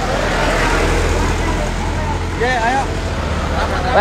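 Road traffic: a vehicle's steady low engine rumble and tyre noise going past, with a couple of short shouts from people on the street about halfway through and near the end.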